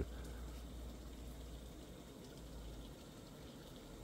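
Faint, steady background noise with a low hum underneath, and no distinct events.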